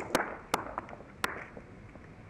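A few sharp knocks or snaps at irregular intervals: four loud ones within the first second and a half, with fainter ticks between.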